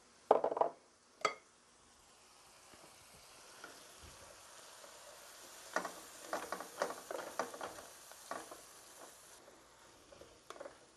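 A wooden spoon stirring and scraping through lobster meat and vegetables sautéing in butter in a frying pan, over a faint sizzle. A couple of knocks come in the first second, and a run of short scraping strokes starts about six seconds in.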